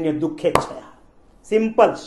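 A man speaking in short phrases in Gujarati, with a pause of about a second in the middle. A single sharp knock comes about half a second in.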